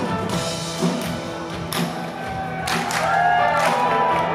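Live rock band playing an instrumental passage: electric guitars holding sustained notes over drums and cymbals, with gliding guitar notes in the second half.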